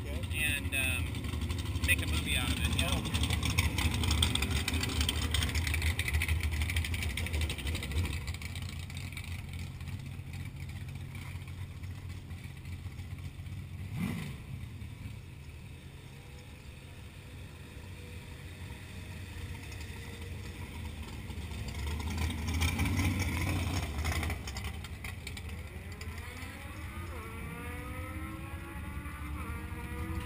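Golf cart running at low speed: a low motor hum that swells and eases off, with a single click in the middle and rising whines near the end.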